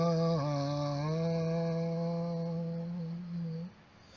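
A man chanting long, steady held notes in a low voice. The pitch steps down slightly twice in the first second, and the note breaks off shortly before the end for a short pause.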